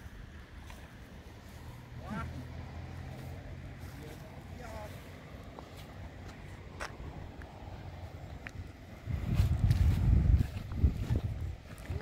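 Wind buffeting an outdoor microphone as a low rumble, growing much louder about nine seconds in for a couple of seconds, with faint voices in the background.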